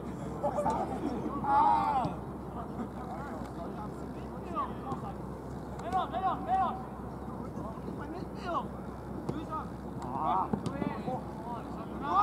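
Soccer players' shouts and calls carrying across the field over a steady low background hum, with louder calls about a second and a half in, around six seconds in, and a little after ten seconds.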